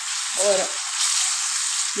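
Chicken cubes and sliced onion sizzling steadily in hot oil in a pan as they are stirred with a metal spoon. The chicken's released juices are cooking off.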